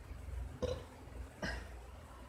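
Two faint, short throat or mouth noises from the narrator, about half a second and a second and a half in, over a steady low hum.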